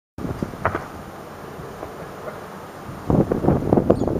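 Wind buffeting the camera microphone, starting suddenly about a quarter of a second in. From about three seconds in, a louder, irregular run of knocks and scuffs rises over it.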